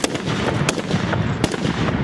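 Japanese matchlock muskets (tanegashima) firing a ragged volley: several sharp shots in quick, uneven succession, the loudest at the start, about two-thirds of a second in and about a second and a half in, over a continuous rumble.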